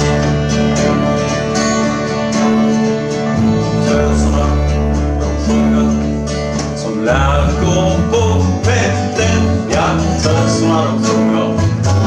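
A live acoustic string band plays a bluegrass-style tune on acoustic guitar, banjo, upright double bass and fiddle. The fiddle plays at first, and a man's singing voice comes in about seven seconds in.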